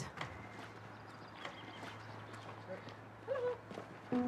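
Faint background ambience: a steady low hum with scattered soft clicks, and one short voiced sound about three seconds in.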